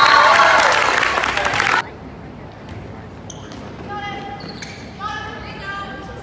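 Spectators in a gymnasium cheering and clapping, loud for about two seconds and then cutting off suddenly. After that it is quieter, with scattered voices and a few knocks of a ball bouncing on the gym floor before a serve.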